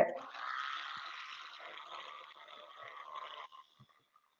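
Toothbrush scrubbing teeth, a steady brushing noise that fades and stops abruptly about three and a half seconds in.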